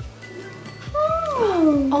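A long exclamation of delight, an 'oooh' that starts high and slides steadily down in pitch over about a second, beginning about halfway in after a quieter moment.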